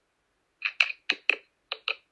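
A quick, uneven run of about six light clicks, starting just over half a second in after a moment of silence.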